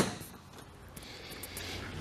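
A single sharp click at the very start, then faint, steady room tone.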